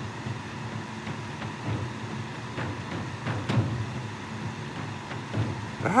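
Steady low background hum, with a few faint ticks and rustles from fingers working thin monofilament fishing line through a hook eye.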